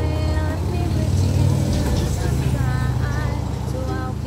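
A motor vehicle passing on the street: a low engine rumble that swells about a second or two in. Under it, ukulele playing and a woman's voice giving a few short sung notes.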